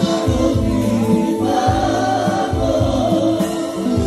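Live Roma band music with several voices singing together over a steady bass beat.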